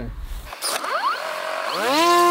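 Parrot Disco fixed-wing drone's rear electric motor and propeller spinning up: a whine that rises in pitch for about a second and a half, then settles to a steady pitch near the end. A brief click comes about half a second in.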